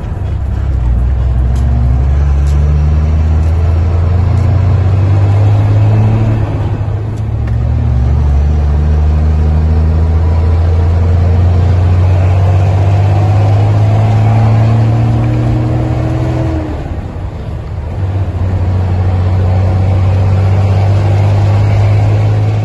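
Heavy truck's diesel engine heard from inside the cab, pulling under load. Its note climbs and drops back in steps as it changes gear, with a short dip in power about seventeen seconds in.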